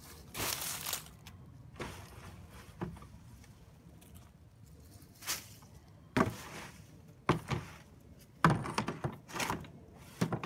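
Dead leaves and clumps of dark soil being dropped and tossed into a raised garden bed: irregular rustles and soft thuds, with a longer rustle about half a second in and a cluster of knocks and rustles near the end.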